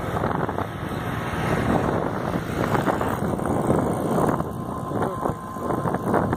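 Wind buffeting the microphone of a moving two-wheeler, with the engine's running drone underneath; a steady, gusty rush throughout.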